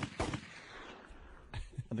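Gunfire sound effect: a few sharp shots, then a noisy echo that fades over about a second.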